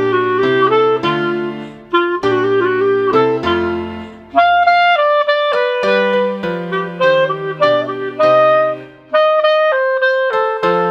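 A clarinet playing a simple lilting melody at 100 beats per minute over piano accompaniment, one clear note after another, with a short break for breath about nine seconds in.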